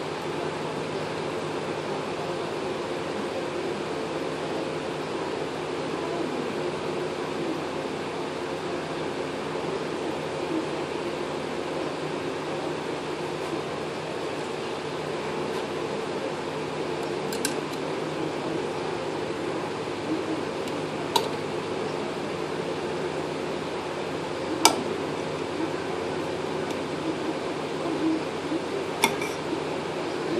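A steady mechanical hum, like a fan, runs throughout. In the second half come a few sharp small clicks as hands work the hose reel's metal inlet fitting while seating its new O-rings.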